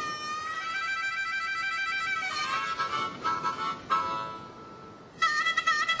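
Harmonica playing sustained chords, changing notes a little after two seconds, dropping away briefly around four seconds in, then starting up again near the end.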